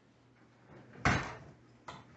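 A single sharp clatter of kitchenware about a second in, dying away quickly, then a smaller click near the end.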